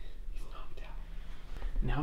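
Hushed whispering over a low steady hum, then a man starts talking in a normal voice near the end.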